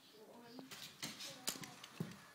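A toddler's toy bat hitting a ball off a batting tee: one sharp knock about one and a half seconds in, the loudest sound, with a small child's brief vocal sounds around it.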